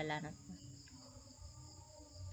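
The end of a spoken word in the first moment, then a faint steady background of a thin high-pitched whine over a low hum, the room noise of a home voice recording.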